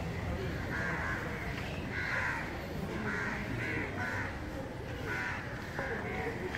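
Crows cawing repeatedly, short harsh calls coming one after another, over a steady low hum of street background noise.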